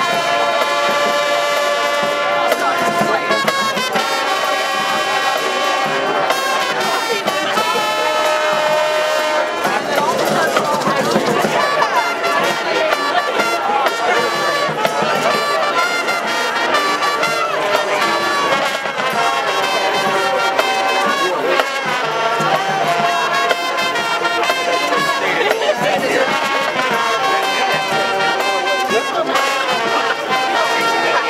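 A marching band playing a tune with saxophones, trumpets and a sousaphone over drums, in long held chords. About ten seconds in there is a busier, rougher passage before the held chords return.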